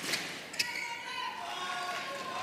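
Badminton hall ambience between rallies: spectators' voices carry through the large hall, with one sharp knock about half a second in.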